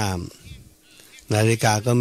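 A man speaking Thai in a slow, drawn-out delivery, with a pause of about a second before he speaks again.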